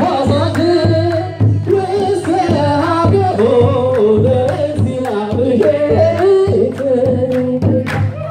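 Ethiopian Orthodox mezmur (hymn): voices singing a melody over repeated beats of a kebero hand drum and hand claps.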